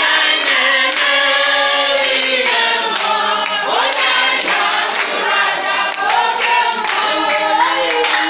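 A group of women singing together in chorus, with hands clapping along to the song.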